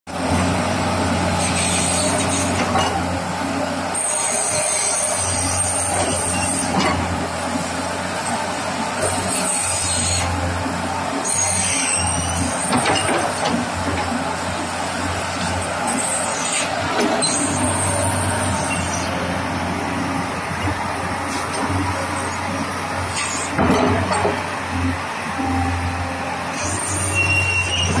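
An engine running steadily with a low, even hum that swells and fades at times, over outdoor background noise.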